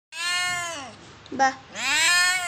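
Orange tabby kitten meowing loudly: one long meow that drops in pitch at its end, then a second meow rising near the end.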